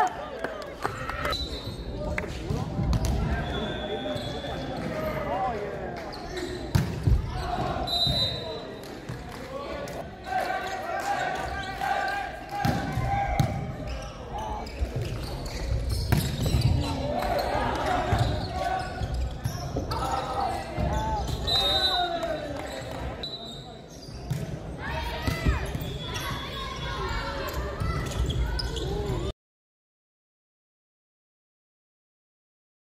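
The sound of an indoor volleyball match in a large, echoing hall: players' and spectators' voices calling, with the sharp smacks of the ball being struck and short high squeaks. The sound cuts off near the end.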